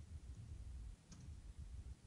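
Faint clicks and taps of a stylus writing on a tablet screen, over a low, steady room rumble.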